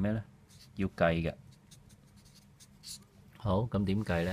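Whiteboard marker writing on paper in short strokes, between short stretches of a man speaking.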